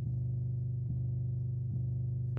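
A music clip played back slowed down to half speed: a steady, low droning tone, with a faint pulse repeating a little under once a second.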